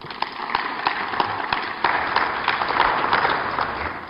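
A roomful of people applauding: dense, continuous clapping that swells towards the middle and thins out near the end.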